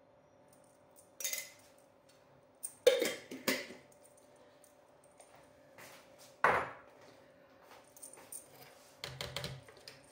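Scattered clinks and knocks of kitchen things being handled while making coffee: a coffee jar and spoon, and items set down on the counter. The loudest knock comes about six and a half seconds in, with a few lighter clicks near the end.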